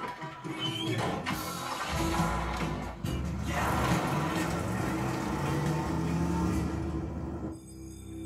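Film soundtrack played through home cinema speakers: a music score, with a loud rushing noise over it from about two seconds in. The noise stops abruptly near the end, leaving quieter music.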